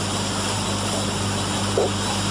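Steady hiss with a constant low hum, the background noise of an old videotape transfer, with no other sound standing out.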